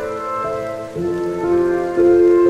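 Steady rain falling on leaves, with slow, soft instrumental music over it, its notes changing about every half second.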